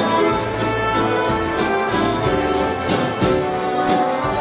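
An accordion band playing a dance tune live: several accordions carrying the melody over a bass line, with guitar and a drum kit.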